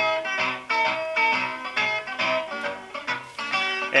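Music with plucked string notes playing through the ineo Alienvibes W402 2.1 speaker set, two satellites and a subwoofer, played from a USB drive.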